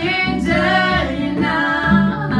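Several voices, women's among them, singing a slow song together in harmony, each note held for about half a second to a second.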